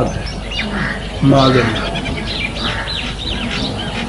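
Small birds chirping repeatedly in short arching calls, with a brief vocal sound from a man about a second in, over a steady low hum.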